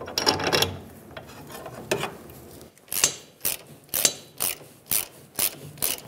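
Hand ratchet clicking as it turns the rear fuel tank strap bolt in, about two clicks a second through the second half, after a few metal clinks near the start.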